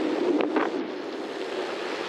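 Steady rush of wind buffeting the microphone, with rolling tyre noise, as a gravel bike coasts along a smooth road.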